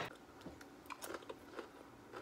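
Faint crunching of matzah, a dry cracker, being bitten and chewed: a scatter of short, dry crackles.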